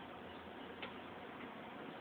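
A single sharp click about a second in, over a steady background hiss.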